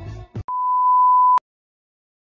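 A steady, single-pitched test-tone beep at about 1 kHz, the kind laid over TV colour bars, lasting about a second and cutting off suddenly. The intro music stops just before it.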